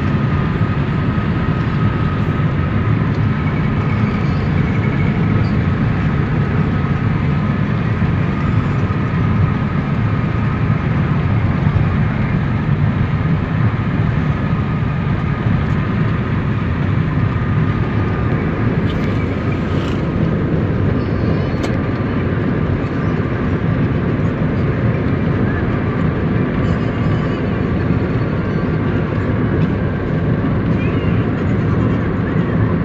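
Steady road and engine noise inside a car's cabin while it cruises along a highway, with a faint high steady tone over the low rumble and a few light clicks past the middle.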